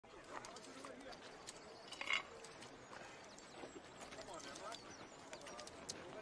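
Faint film-soundtrack background of indistinct voices with scattered small knocks and clicks. A short, louder sound comes about two seconds in.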